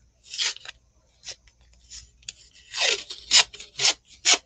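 Blue painter's tape being pulled off its roll in about five quick peeling rasps, louder in the second half.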